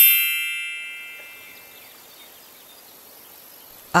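A bright bell-like chime struck once, ringing out and fading away over about two seconds: a read-along book's signal to turn the page.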